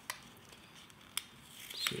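Card and paper packaging being handled: a few light clicks and a faint rustle as fingers work a card envelope and its folded wrapping.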